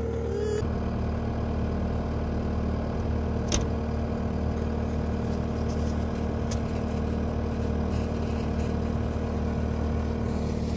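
Compact track loader's diesel engine idling steadily, with one sharp click about three and a half seconds in.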